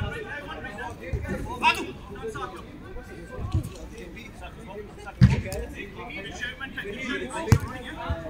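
A football being kicked during a five-a-side game, with a few sharp thuds. The loudest come about five seconds in and again near the end, over players calling out across the pitch.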